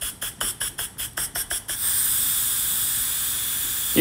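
Stovetop pressure cooker venting steam through its lid valve as the pressure is released manually after cooking. The steam spurts in rapid pulses, about six a second, then about two seconds in it settles into a steady hiss.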